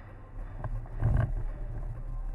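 Low rumbling handling noise from a camera being swung around quickly, loudest a little after one second in, with a few short sharp knocks.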